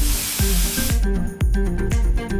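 Powder-coating spray gun hissing as it blows powder onto a steel bicycle frame, cutting off about a second in. Background music with a steady beat plays throughout.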